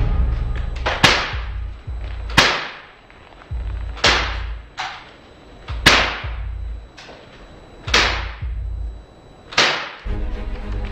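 Cinematic soundtrack music: six sharp percussive hits, one every one and a half to two seconds, each fading out over about a second, over a low drone.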